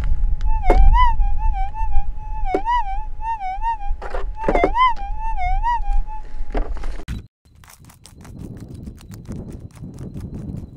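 Minelab gold detector's steady threshold tone, warbling up and down in pitch each time the coil sweeps over a buried target: a decent-sounding signal the prospector hopes is gold. The tone cuts off about seven seconds in, followed by a run of sharp knocks and scrapes from a pick digging into the stony ground.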